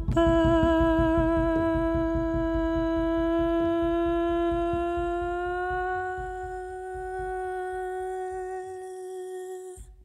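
A woman's voice holds one long hummed note with vibrato at the end of a song, its pitch creeping slightly upward, over a low pulsing rumble. It fades over the second half until it stops.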